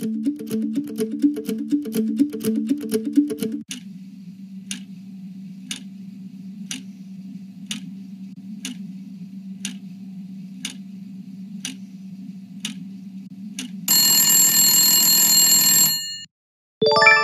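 Game-show countdown timer sound effect: a short pulsing musical sting, then a low steady drone with a tick about once a second as the timer counts down from ten. About two seconds before the end the timer runs out and a loud alarm tone sounds.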